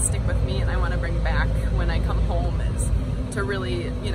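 Indistinct voices talking, one of them high-pitched, over a steady low rumble.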